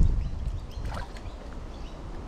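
Small splashes of water as a hooked bream struggles at the surface, beside a low rumble at the start that fades within the first half second.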